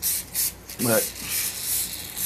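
Aerosol can of textured bed-liner coating spraying in several short spurts of hiss, the can nearly empty.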